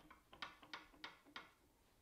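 Faint, quick clicking, about five clicks a second, stopping about one and a half seconds in: a Harvey MG-36 miter gauge rocked side to side, its miter bar knocking in the table saw's slot. The clicks are the sign of play between the bar and the slot.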